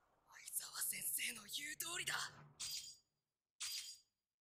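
Faint voices from the anime episode playing quietly underneath: a few short spoken phrases, a silent gap about three seconds in, then a brief breathy sound just before the end.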